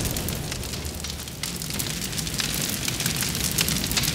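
Fire burning with many small crackles over a low rumble.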